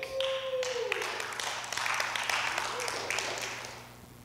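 Congregation applauding, dying away near the end.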